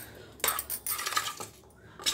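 Metal spoon clinking and scraping against a stainless steel bowl while stirring flour-coated corn kernels, in a run of quick clatters from about half a second to a second and a half in.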